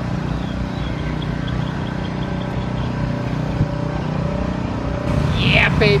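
A steady engine drone holding one even pitch throughout, with no change in speed.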